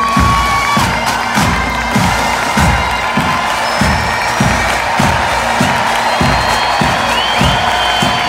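Massed pipe band playing, with held bagpipe tones over a steady drum beat about two strokes a second. A large crowd cheers and whoops over the music.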